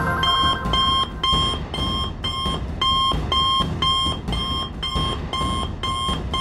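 A cartoon smartwatch call signal: a short electronic beep repeating about twice a second, over a low background rumble.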